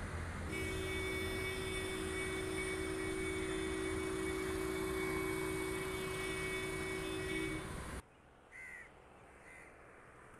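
Outdoor road ambience: steady traffic and air noise with a held tone through most of it. It cuts off suddenly about eight seconds in to a quieter background, where a crow caws twice near the end.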